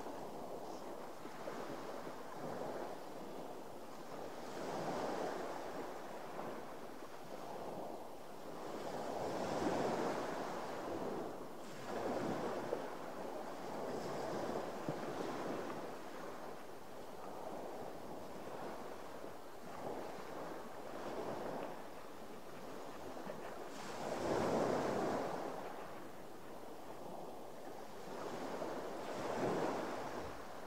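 Sea water washing against the side of a drifting boat, swelling and fading every few seconds, with some wind on the microphone. A couple of faint clicks come near the middle.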